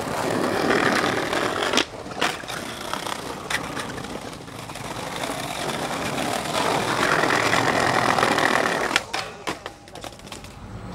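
Skateboard wheels rolling over brick pavers with a rough, steady rattle. Sharp clacks of the board come about two seconds in, and a rapid clatter of the loose board hitting the ground comes near the end as a skater bails.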